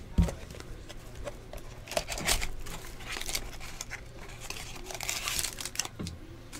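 Trading card pack wrapper crinkling and tearing as it is handled and opened, in irregular bursts, with a single low thump just after the start.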